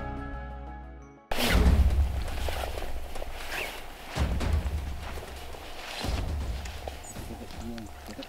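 Background music fades out, then a sudden cut to outdoor sound: a gusty low rumble of wind on the microphone, with rustling. A man's voice starts near the end.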